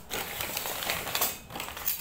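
Steel knives with wooden handles clinking and scraping against one another as they are picked up and moved one at a time, with the brown paper beneath them rustling.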